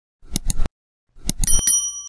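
Subscribe-button animation sound effect: a quick cluster of clicks, a short gap, a second cluster of clicks, then a bright bell chime that rings on to the end, the notification-bell ding.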